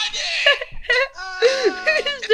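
A girl yelling in a strained, wailing voice, in a few drawn-out cries broken by short pauses.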